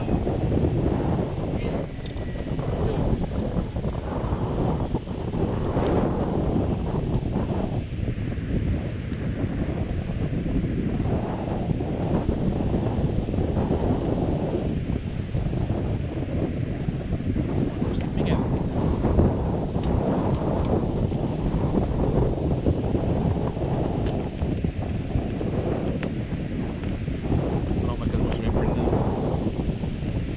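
Strong wind buffeting the microphone of a camera riding on a moving kite buggy: a dense, low rumble that swells and dips throughout.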